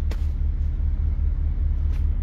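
Car engine idling, heard inside the cabin as a steady low rumble, with a light click just after the start and another near the end.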